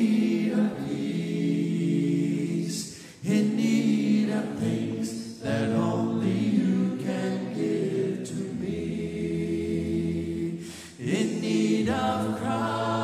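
A church congregation singing a hymn a cappella in parts, without instruments, led by a song leader's voice on a microphone. The singing pauses briefly between phrases about three seconds in and again near the end.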